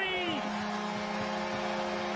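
An arena goal horn sounding one steady, many-toned chord, signalling a goal just scored by the home team. A commentator's voice trails off over it in the first half-second.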